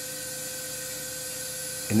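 Electrosurgical equipment running: a steady, unchanging whine over an even hiss.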